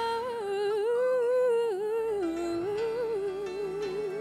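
A solo female voice singing a wordless, hummed melody with vibrato and small pitch runs over a soft backing track.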